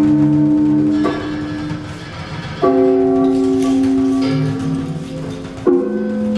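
Live trio music on lute, percussion and electric guitar: long, ringing, bell-like notes that sustain and fade. New notes sound about a second in, about two and a half seconds in, and near the end.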